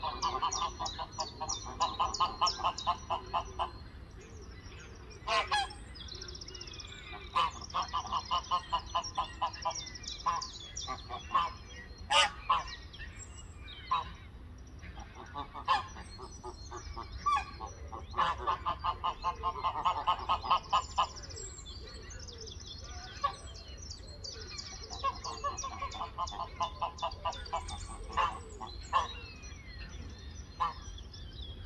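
Geese honking in rapid bouts of many calls a second, each bout lasting a few seconds with pauses between, while small songbirds sing in the background.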